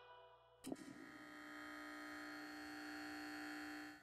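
Near silence, then a faint, steady held tone with several pitches sounding together, starting with a click after about half a second and stopping just before the end.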